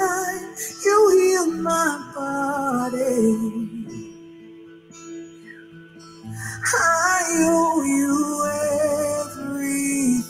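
Slow, stripped-down gospel ballad sung by a woman with only guitar accompaniment. It has two sung phrases with a softer instrumental stretch between them, about four seconds in.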